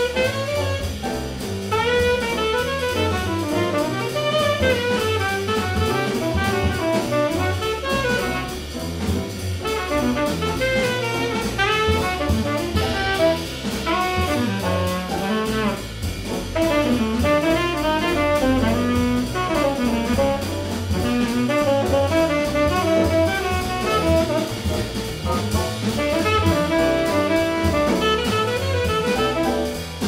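A live jazz combo playing, with a saxophone carrying continuous melodic lines over a drum kit and low bass notes.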